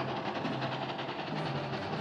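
Steam locomotive running along the track, with a fast, even rhythm of chuffing and rail clatter.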